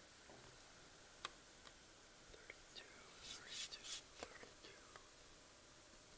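Near silence: room tone with a few faint clicks and a brief stretch of soft whispering about three to four seconds in.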